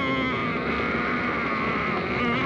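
Horror film soundtrack: a long, high, slightly wavering cry or tone held over a dense, rumbling background.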